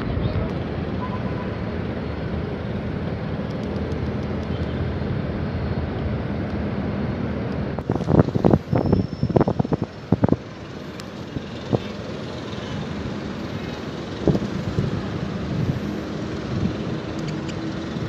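Steady outdoor background noise with a low hum and wind on the microphone. About eight to ten seconds in there is a burst of knocks and rustles from close handling, with a couple more a few seconds later.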